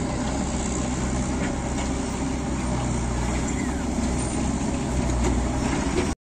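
Diesel engine of a dumper truck running steadily with a constant low hum.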